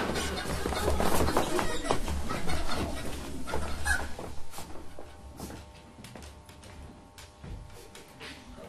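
Hurried footsteps and knocks on a wooden theatre stage as actors scatter to hide, dying away after about five seconds. A few faint steady tones follow.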